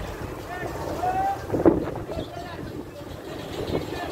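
Indistinct voices of people at the poolside, with wind buffeting the microphone and a low steady rumble underneath; one short, loud sound stands out about a second and a half in.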